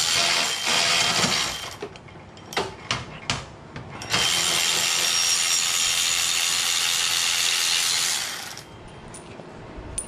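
Cordless electric ratchet running, spinning out the 12 mm bolts of the power steering pump: a short run of about two seconds, then a longer run of about four seconds starting about four seconds in, with a few small metal clicks between.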